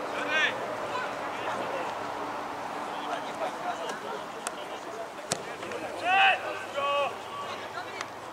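Players' shouts on a football pitch over steady outdoor background noise, with two loud calls about six and seven seconds in. A sharp knock comes a little after five seconds.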